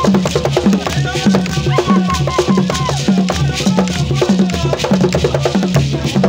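Live traditional drumming with gourd shakers, playing a steady repeating drum pattern of about two beats a second under a dense rattle of shakers, with voices singing over it.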